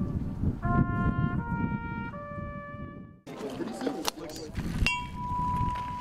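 A wind instrument plays a slow tune of held notes, the pitch changing about every second. After a break, a hanging bell made from a metal cylinder is struck once, near the end, and rings on with a steady tone.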